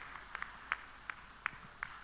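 A few people's faint, scattered hand claps, irregular at about three or four a second, thinning out as the applause dies away.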